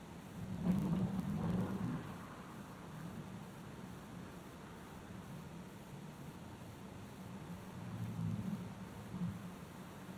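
Faint road traffic, with a vehicle passing about a second in and another near the end.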